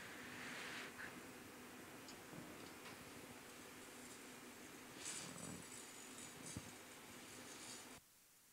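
Faint, steady low rumble of a glass shop's furnaces and burners, with a brief hiss about five seconds in and a single light tap a little later.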